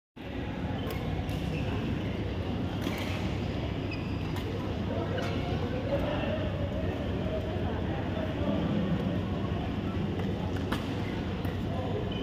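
Badminton play: sharp racket hits on the shuttlecock, spaced irregularly, over a steady low rumble of the hall and faint background voices.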